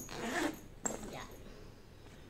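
Zipper on the outer back pocket of a Carlo Rino handbag being pulled open, with a sharp click a little before the midpoint.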